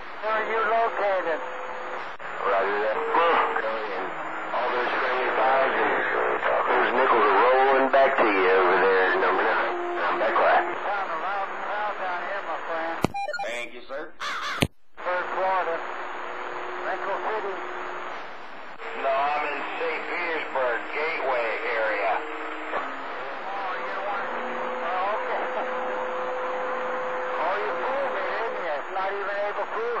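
CB radio receiving long-distance skip on channel 28: voices through the receiver's speaker, hard to make out, with steady whistle tones running under them. The signal drops out briefly with a couple of sharp clicks about halfway through.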